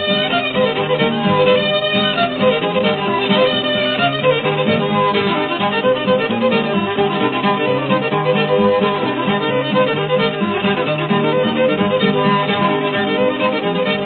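Old-time string band music from an early recording: a fiddle plays a lively dance tune over a steady guitar accompaniment. The sound has a dull top end with nothing above the upper-middle range.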